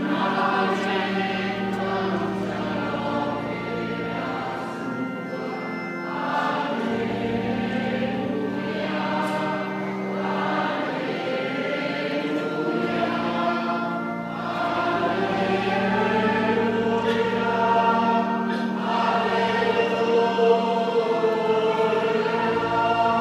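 Many voices singing the entrance hymn of the Mass together, in long held notes.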